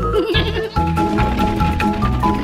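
Cartoon background music, with a short wavering, bleat-like vocal sound in the first half-second or so.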